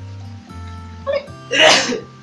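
Background music with held notes. About one and a half seconds in, a short, loud, breathy vocal burst.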